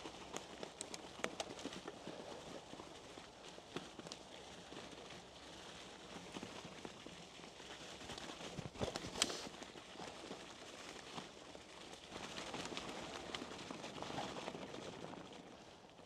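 Mountain bike rolling along a forest trail covered in dry leaves: faint crackling and crunching of leaves and twigs under the tyres, with scattered small clicks and a louder clatter about nine seconds in.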